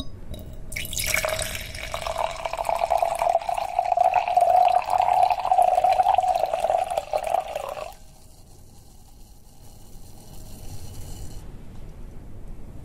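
Red wine poured from a glass bottle into a wine glass: a steady pour lasting about seven seconds that stops suddenly near two-thirds of the way through.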